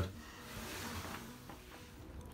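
Quiet background with a faint steady hum and a soft rustle from about half a second to a second in.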